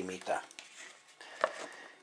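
The end of a spoken word, then a quiet stretch with one faint click about one and a half seconds in, as a plastic plate lid is handled.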